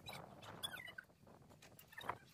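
A faint, brief, wavering high-pitched animal call a little over half a second in, over quiet background rustle.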